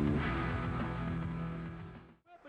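Rock theme music with guitar for a TV wrestling show's opening titles, fading out over the second half.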